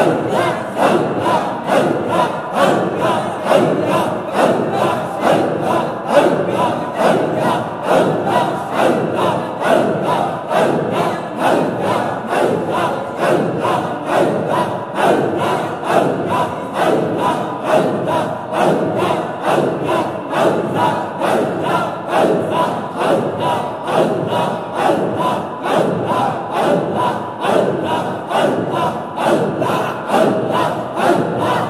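A large group of men chanting zikr together, a short devotional phrase repeated over and over in a steady, even rhythm.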